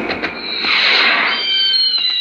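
Firework sound effect: a rushing burst about half a second in, then thin, slightly falling whistling tones with scattered crackles that begin to fade near the end.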